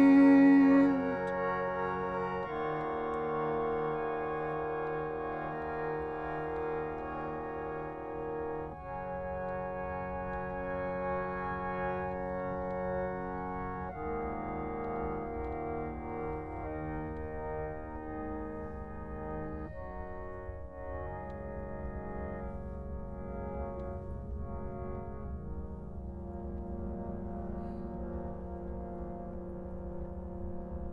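Small wooden keyboard organ playing slow, sustained chords that change every few seconds, slowly fading and losing their higher notes.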